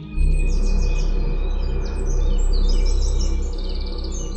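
Small songbirds singing: rapid repeated chirping trills and a few falling twitters, over ambient music, with a deep low rumble that comes in just after the start and is the loudest sound.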